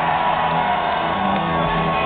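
Live rockabilly band playing, with an electric guitar over changing bass notes and the crowd whooping over the music.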